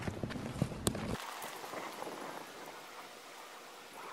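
Footsteps crunching through snow, about three steps a second, that fade to faint after the first second as the walker moves away.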